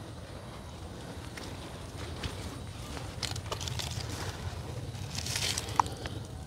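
Faint rustling and handling noises over a low steady outdoor rumble, with a few light clicks and a short rustle near the end, as a cloth measuring tape is wrapped around a potted bonsai trunk.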